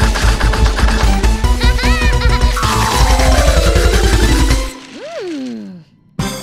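Cartoon sound effect of rapid chomping and crunching through a stack of paper, set over upbeat music. A long falling tone runs through the middle, and a short swooping glide rises and falls near the end.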